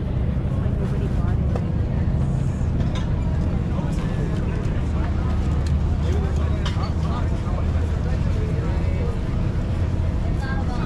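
Indistinct chatter of a market crowd, with a steady low rumble of wind buffeting the microphone.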